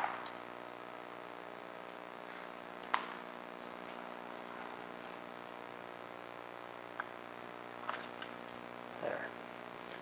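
A few light clicks and taps of a hand tool working the wire terminals off an X-ray tube head, one at the start, one about three seconds in and a few faint ones near the end, over a faint steady hum.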